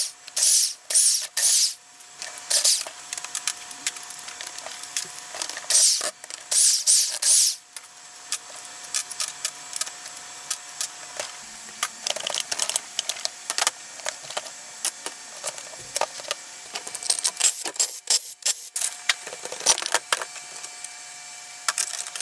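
Impact wrench run in short bursts, several in the first few seconds and again around six to seven seconds, backing out the case bolts of a Honda Ruckus GET scooter engine. Between and after the bursts come many light clicks and knocks of metal parts and tools being handled.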